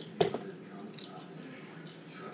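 A sharp knock about a fifth of a second in, with a smaller click right after, then faint scattered clicks and rustles.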